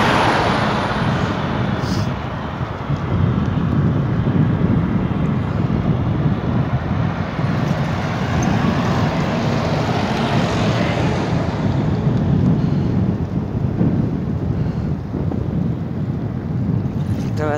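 Wind buffeting the microphone of a camera on a moving bicycle, with road traffic passing; the traffic noise swells at the start and again around ten seconds in.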